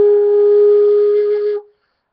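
Hand-made end-blown rim flute in the key of A, sounding one steady breathy note that stops about one and a half seconds in. The breath is split cleanly on the rim by the right lip placement, which gives the flute's first sound.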